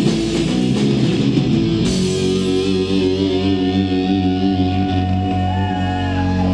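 Live rock band of electric guitar, bass guitar and drums playing loud. About two seconds in the drum hits stop and the band holds a long sustained chord, with one high guitar note wavering near the end.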